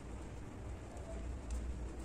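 Faint handling sounds of yarn and crocheted fabric as a seam is sewn with a yarn needle: soft rustling with a few light ticks, over a low steady rumble.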